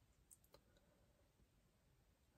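Near silence: quiet car-cabin room tone, with two faint small clicks in the first half second.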